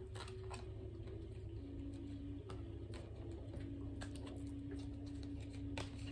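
Tarot cards being shuffled by hand: soft, irregular clicks and flicks of card stock. Underneath are a steady low hum and a faint held tone that steps down in pitch a couple of times.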